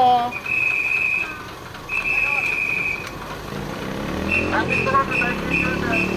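A marshal's whistle guiding a vintage bonnet bus: two long blasts, then, about four seconds in, a run of short toots about three a second. Under the toots the bus's engine runs as it pulls forward.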